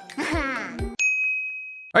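A short, high-pitched sliding voice-like sound with two low thumps, then, about a second in, a sudden bright ding sound effect that holds one steady tone for nearly a second.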